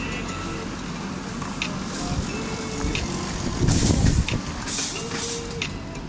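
Background music over the steady hubbub of a busy indoor mall, with scattered clicks and a louder hissing rush about four seconds in.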